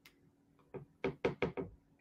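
A quick series of about five knocks or taps on a hard surface, about five a second, in the second half of the pause.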